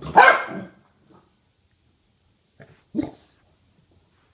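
A corgi barks once, loudly, just after the start, then a shorter, sharp sound follows about three seconds in.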